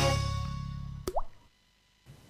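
Intro jingle's final chord fading out, then a single plop sound effect about a second in: a click with a quick rising bloop, like a drop falling into liquid.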